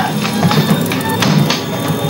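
A splintered wooden door being broken apart, with several sharp cracks of splitting wood, over film music with a steady low drone.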